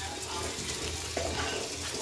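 Neyyappam batter frying in a shallow pan of hot oil, with a steady sizzle.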